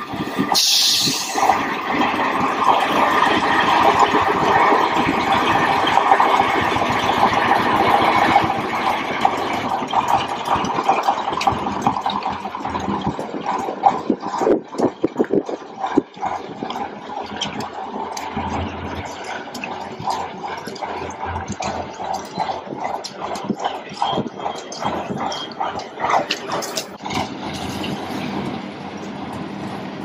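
KAMAZ truck's V8 diesel engine running under load as it tows a boat trailer with a yacht, loudest for the first several seconds and then fading as it pulls away. Tyres hiss and crackle through wet slush.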